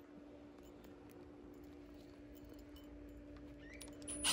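Near silence, with a faint steady hum.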